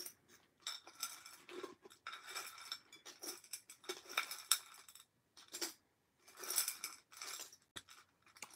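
Loose metal and rhinestone costume jewelry clinking and rattling as it is picked through and handled, in short irregular clusters with brief pauses.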